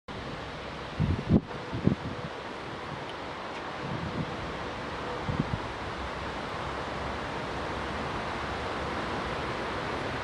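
ČD class 460 electric multiple unit running slowly toward the platform, heard as a steady rushing noise that grows gradually louder. Wind buffets the microphone with low thumps in the first two seconds and again around four and five seconds in.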